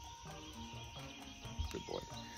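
Faint outdoor background with a steady, high-pitched insect drone, and a brief soft noise near the end.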